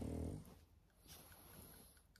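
A dog gives one short, pitched vocal sound, about half a second long, at the very start; the rest is faint and quiet.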